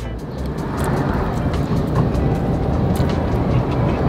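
Low, steady vehicle rumble heard from inside a car cabin, swelling slightly in the first second, with a few faint clicks.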